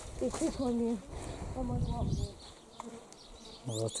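A flying insect buzzing close to the microphone, in two passes in the first half, with a few short high chirps near the end.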